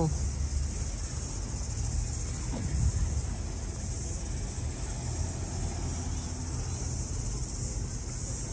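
A steady high-pitched chorus of insects calling in the trees, over a low rumble, with a brief dull thump about three seconds in.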